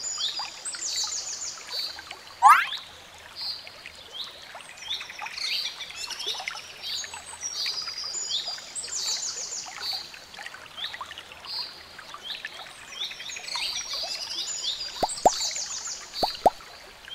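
Many small birds chirping and trilling continuously in a busy chorus of short, high calls. About two and a half seconds in there is one loud rising whistle-like sweep, and a few short plinks come near the end.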